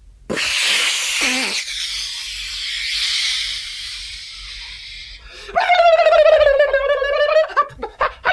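A sound poet's voice: a long breathy hiss starting suddenly a moment in and lasting about five seconds, then a high vowel held for about two seconds with a slight waver. Quick clipped syllables start near the end.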